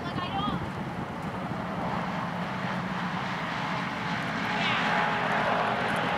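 A steady engine drone that swells slightly in the second half, with brief voices over it just after the start and again near the end.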